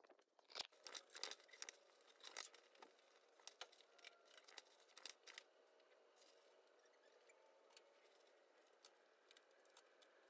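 Near silence, with faint scattered clicks and rustles over the first five seconds or so, then only a faint steady background.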